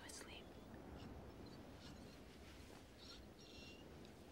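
Near silence: room tone with a few faint, brief whisper-like sounds.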